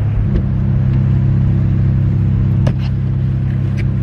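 Car engine idling, heard from inside the cabin as a steady low hum that fills out slightly a moment in. A couple of sharp clicks come near the end.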